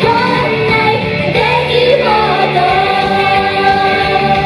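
Female idol singer singing a pop song into a handheld microphone over a loud backing track, holding one steady note in the last second or so.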